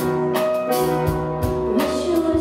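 Live band playing an instrumental passage: drum-kit hits and low kick-drum thumps every half second or so over held chords from keyboard, guitar and strings.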